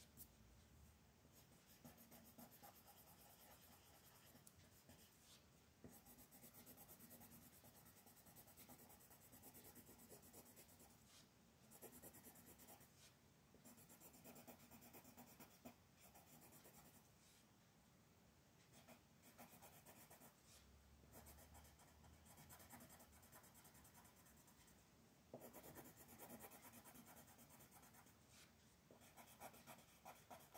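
Faint scratching of an orange colored pencil shading on coloring-book paper, in runs of quick back-and-forth strokes with a few short pauses.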